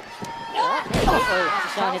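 A heavy thud about a second in: a wrestler's body hitting the ring canvas.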